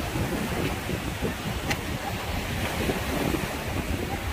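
Small waves breaking and washing up a sandy shore, with wind buffeting the microphone in gusts. A short click comes a little before halfway through.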